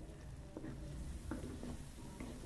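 A wooden spoon stirring frying onions in a metal pot: a few soft scrapes over a low, quiet frying sound.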